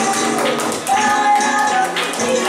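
Flamenco bulería music: a sung melody with held, sliding notes over quick, sharp rhythmic clicks of claps or heel taps.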